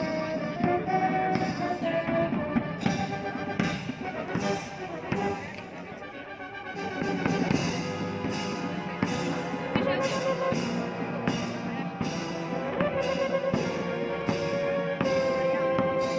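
Military band of brass and drums playing outdoors, with a steady drum beat under the brass; the music goes quieter for a moment about five seconds in, then builds again.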